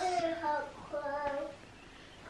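A woman's voice singing two short, held, wordless notes.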